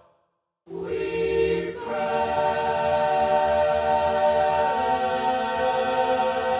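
A choir sings slow, long-held chords. The sound drops out completely for about half a second at the start, then the singing comes back, moving to a new held chord about two seconds in.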